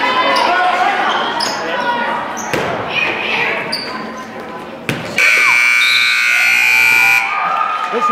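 Gymnasium scoreboard buzzer sounding the end of the game: one loud, steady buzz of about two seconds, starting about five seconds in and cutting off suddenly. Crowd voices and ball bounces come before it.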